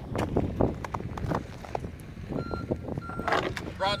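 A high-pitched electronic beep sounds on and off about every half second, starting about halfway through, over scattered clicks and knocks.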